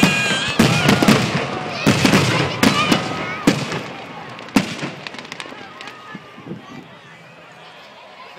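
Aerial fireworks shells bursting in quick succession with crackling, with people shouting and cheering over them. The bangs come thickly through the first half, there is one last sharp bang about halfway through, and then the noise dies down.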